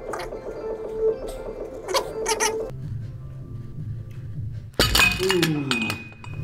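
Background music with a steady held tone. About five seconds in, a sudden loud clatter of weight plates is followed by a falling groan.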